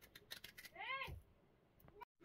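Knife cutting through a green bell pepper, a few crisp clicks and snaps, then a single short call about a second in that rises and falls in pitch.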